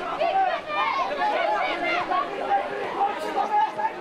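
Several voices talking and calling out over one another: chatter from people at a football match, with no one voice standing out.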